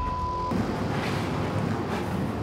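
A broadcast censor bleep: a steady 1 kHz beep about half a second long, masking a swear word after "Holy". A steady low rumble runs under it and carries on after the beep stops.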